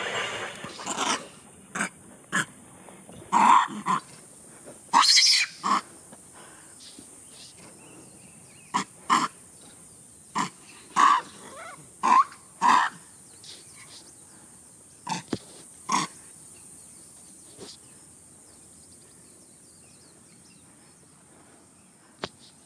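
Macaques giving a string of short, harsh calls, about a dozen in the first sixteen seconds and loudest around five seconds in, as the troop squabbles with a low-ranking young male.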